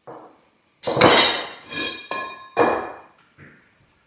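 Metal workshop tools being handled on a wooden workbench: a hammer and metal pieces clanking and clinking about six times, each knock with a short metallic ring. The loudest clanks come about a second in and again about halfway through.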